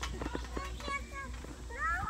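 Children's high voices and a rising squeal near the end, over scattered thumps of feet landing on a trampoline mat.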